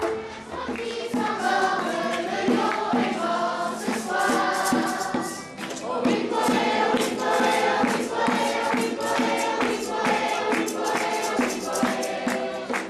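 Children's choir singing with acoustic guitar accompaniment keeping a steady rhythm.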